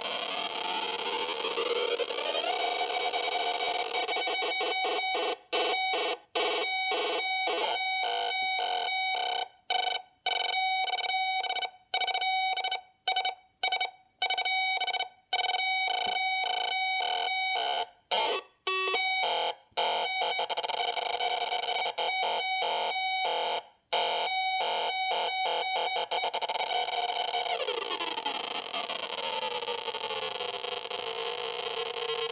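Franzis retro-sound kit synthesizer in three-oscillator mode: three oscillators interfering with each other into a buzzy electronic tone from a small speaker. The pitches glide as a potentiometer is turned near the start and again near the end, and through the middle the tone chops on and off in a rapid, stuttering pattern.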